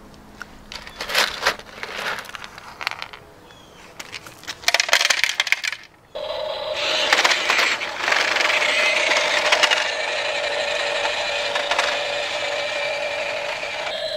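Pebbles clattering as they are scooped and dropped with a plastic toy shovel. About six seconds in, a remote-control toy dump truck's small electric motor and gears start whirring steadily.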